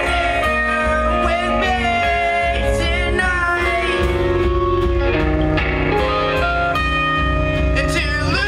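Live rock band playing loud: electric guitars holding sustained notes over bass and drums.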